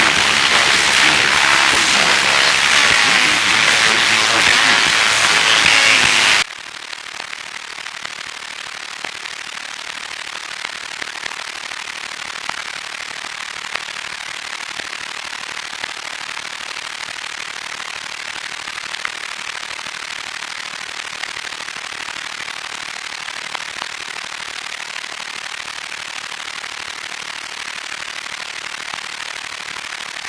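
Analog TV set tuned to a channel whose transmitter has gone off air. A louder, rougher noise cuts off abruptly about six seconds in, and a steady static hiss follows, with a few faint clicks: the sign that the station's analog signal has ended.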